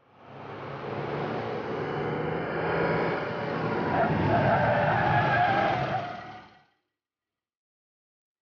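A car driving through an underground parking garage, its engine and tyres rising in level over the first second or so, with a higher whine coming in during the second half. The sound cuts off suddenly near the end.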